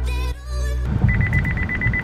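Background music for the first second, then a car's driver-warning alert beeping rapidly at one steady high pitch over road noise inside the cabin. It is the car's sensitive safety system flagging the driving.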